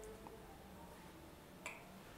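Near silence: quiet studio room tone, broken by a single short click near the end.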